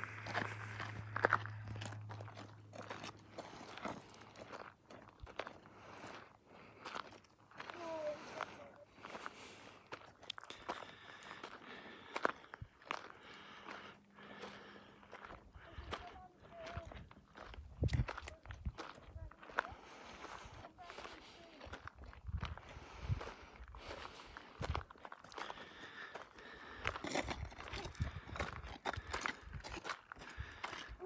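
Footsteps crunching on a dry dirt and gravel trail as several hikers walk, a quick irregular run of steps.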